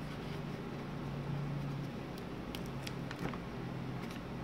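A plastic-covered diamond painting canvas being handled by hand, giving a few faint crinkles and ticks in the second half, over a steady low background hum.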